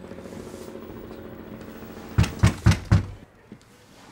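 A steady low hum, then four quick knocks on a room door about a quarter second apart, starting about halfway through.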